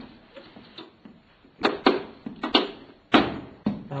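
A few sharp knocks and clatters of objects being handled, about five in all, coming in the second half.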